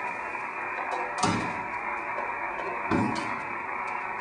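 Steady receiver hiss from a ham radio set's speaker, cut off sharply in the treble like a single-sideband receiver's audio: the band is open with no signal coming through. Two dull knocks, about a second in and near three seconds, as the open metal equipment chassis is handled.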